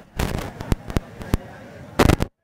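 Camera shutters clicking among a crowd of photographers: a quick run of clicks, then single clicks at uneven intervals, and another rapid burst at the end.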